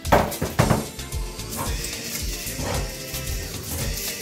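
A few metal clanks, as of a baking tray and oven rack being handled: two sharp ones in the first second, then two fainter ones. Background music with a steady beat runs under them.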